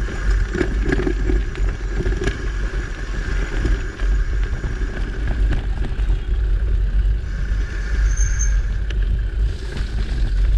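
Mountain bike rolling along a dirt singletrack, heard from a camera on the rider or bike: a steady low rumble with scattered clicks and rattles as the tyres run over small stones and roots.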